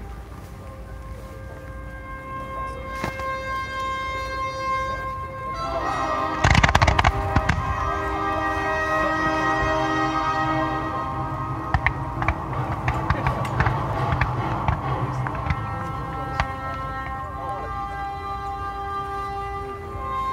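Music with long held notes plays throughout. About six and a half seconds in comes a loud cluster of firework bangs. Scattered single pops and cracks from the fireworks follow over the next several seconds.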